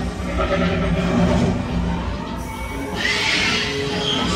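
Recorded dinosaur screeches from the Jurassic Park River Adventure ride's sound effects, played over background music; the loudest screech comes about three seconds in.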